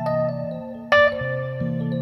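Piano: a sustained C7 chord in the low register under a short blues phrase of single struck notes in the right hand, with one loud note about a second in.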